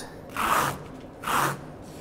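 A squeegee scraping across a wet concrete-overlay coat containing crushed marble. It makes two short swipes about a second apart, each in a different direction, to texture the surface with chatter marks.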